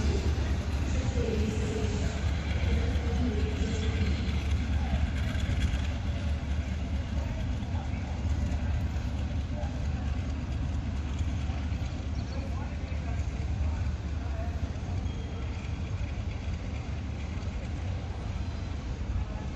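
Diesel locomotive hauling a string of wagons running away along the track: a steady low engine rumble that slowly fades.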